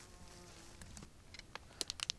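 A flying insect buzzing faintly and briefly, then a few sharp clicks near the end.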